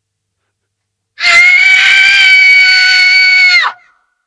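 A long, high-pitched scream of terror held steady on one pitch for about two and a half seconds, starting about a second in and cutting off sharply.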